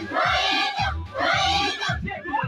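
A large choir singing together, two sung phrases with a brief break about halfway through, over a pulsing low beat.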